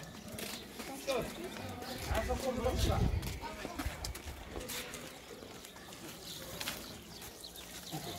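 Background voices of children chattering, with scattered clicks and a low rumble about two to three seconds in.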